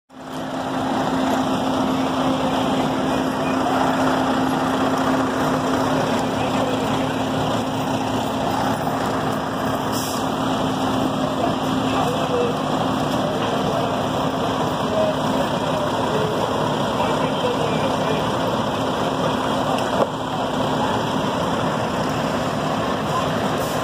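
Fire truck engines running steadily, a dense constant noise with a low hum underneath, fading in at the start.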